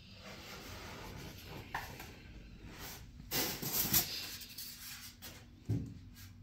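Handling noise from a white foam packing tray: foam rubbing and scraping under hands, with a louder scrape about three and a half seconds in and a couple of short knocks.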